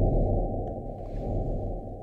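Eerie, muffled low pulsing from a radio pulsar's signal rendered as sound, like an alien heartbeat.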